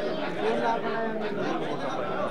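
Crowd chatter: many people talking at once, overlapping voices with no single clear speaker.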